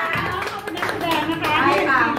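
A small group of people clapping by hand, with voices talking over the clapping.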